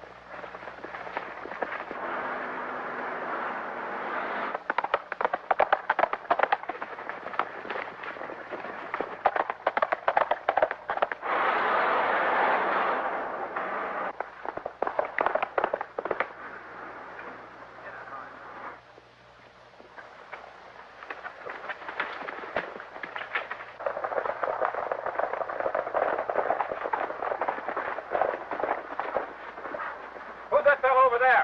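Chase sound effects on an old optical film soundtrack: a motor car running, with many sharp cracks through the middle and a loud burst of noise about twelve seconds in.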